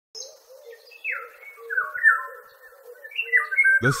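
Birds calling: a series of clear, descending whistled calls, over a fainter low call repeated about three times a second.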